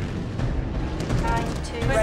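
Sound effects of an air battle: a steady low rumble with a few sharp bangs like gunfire about a second in, and pitched tones entering over the second half.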